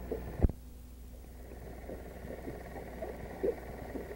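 Faint steady low hum of an old home-video recording, with a single sharp click about half a second in and only faint background noise after it.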